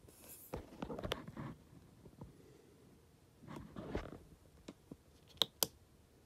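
Faint rustling handling noise with scattered clicks as the rotary knob of a Truma control panel is turned and pressed, ending in two sharp clicks close together near the end.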